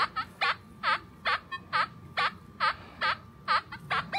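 Nokta Triple Score metal detector in Relic mode with iron reject at five, giving short warbling tones that dip and rise in pitch, a little over twice a second, as the coil sweeps over a large buried piece of iron. This is the detector's iron response, signalling big iron rather than a good target.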